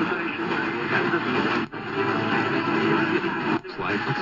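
C.Crane CC Radio EP Pro's speaker on the evening AM band as it is tuned from station to station: broadcast voices under static, with two short dropouts, about one and a half and three and a half seconds in.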